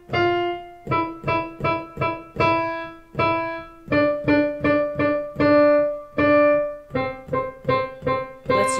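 Digital piano played with the right hand: a five-finger exercise in a repeating rhythm of four short notes and two long ones, which starts again on a new pitch about every three seconds.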